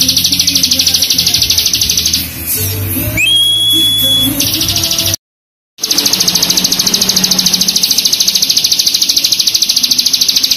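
Ciblek gunung (a prinia) singing its long, rapid, dense buzzing trill (the 'bren'). The trill breaks off about two seconds in for a single whistled note that rises and then holds steady. The sound cuts out completely for about half a second around five seconds in, then the same fast trill resumes.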